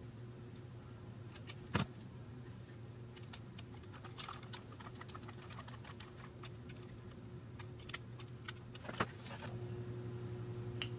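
Small loose metal screws clinking as a screwdriver picks through a plastic bag of them, heard as scattered light clicks and rattles, with a sharper click about two seconds in and another near the end.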